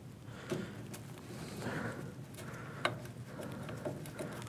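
Faint handling sounds of a small plastic control box being fitted to a heater's metal casing: a few light clicks and a short rustle as a bottom screw is started.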